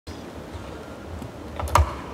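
A steady low hum, then a few sharp clicks near the end, the last and loudest a hard knock: handling noise on the stage equipment.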